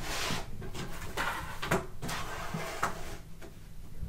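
Fabric-covered tablet keyboard covers being slid across a wooden tabletop and pushed together side by side, with scraping and a few knocks.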